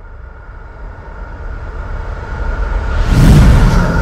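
Logo-reveal sound effect: a deep rumble that swells steadily under a thin held tone, building to a bright whooshing burst about three seconds in, then starting to fade.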